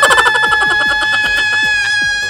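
A cartoonish, high-pitched crying wail held on one steady note, over a fast, regular ticking.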